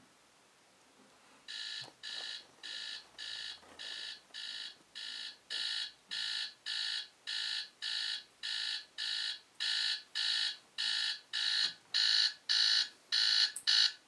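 A phone alarm beeping: short electronic beeps, about two a second, starting a second and a half in and growing louder, until it is switched off near the end.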